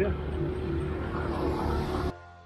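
Wind and road rumble on a camera riding on a bicycle along a highway, with a steady engine hum from passing motor traffic and a hiss that grows toward the end.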